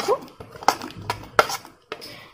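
A metal spoon clinking and scraping against a ceramic plate as chopped apple is pushed off it into a bowl: several short clinks, the loudest about one and a half seconds in.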